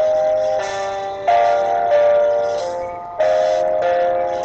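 Background music: a melody of held notes that change pitch every second or so, with new notes starting about half a second in, about a second in, and past three seconds.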